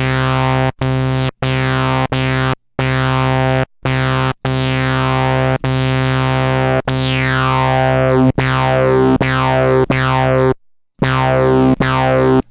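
u-he Diva software synthesizer playing a bass sound through its high-pass filter in Bite mode: the same low note is restarted about a dozen times, with short gaps between. In each note a resonant peak, driven by envelope 2, sweeps downward, heard most plainly in the second half as the peak setting is dialled in.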